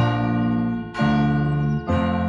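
Electric piano playing repeated chords, struck about once a second and held between strikes.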